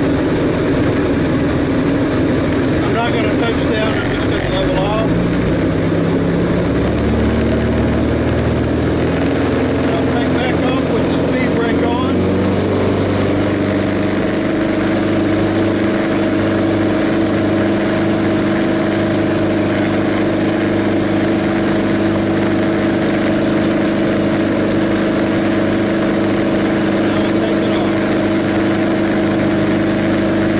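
Light aircraft engine and propeller heard from inside the cockpit, the pitch rising steadily over about ten seconds as power comes up for the takeoff, then holding at a steady full-power climb.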